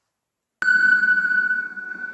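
A cinematic transition sound effect: after about half a second of silence, a sudden hit brings in a single high ringing tone over a low rumble, which slowly fades away.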